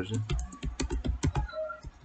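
Computer keyboard typing: a quick run of keystrokes that thins out after about a second and a half.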